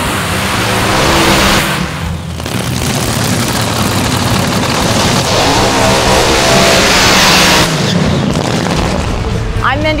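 A nitro-burning front-engine top fuel dragster engine running very loud, with a brief dip about two seconds in, then revving up before the roar cuts off abruptly about three-quarters of the way through. Background music plays under it.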